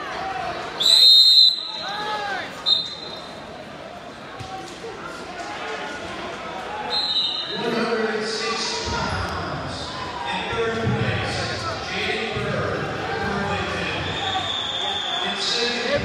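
A wrestling referee's whistle blows loud and sharp about a second in, stopping the action on the mat. Shorter whistle blasts follow, over the chatter and shouts of a crowd echoing in a large gym, and the voices grow busier in the second half.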